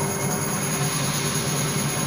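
Ensemble of bamboo angklungs shaken together, a continuous rattling tremolo holding sustained chord tones.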